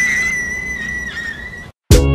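A single long, high whistle that rises into its pitch and holds steady for about a second and a half, then cuts off abruptly. Right at the end, loud music with a heavy beat starts.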